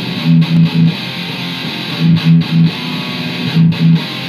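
Heavily distorted electric guitar through a Line 6 amp playing a dark, low riff of fifths on the thickest strings against the open low E. Short groups of quick low notes come about every one and a half seconds over a ringing chord.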